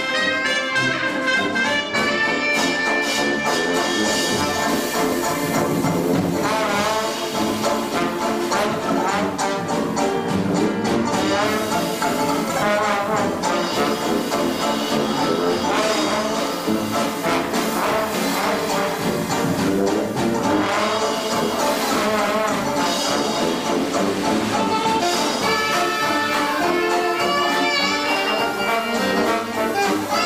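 A 1920s-style hot jazz band playing: trumpet, reeds, trombone and sousaphone over a rhythm section. A trombone is to the fore in the second half.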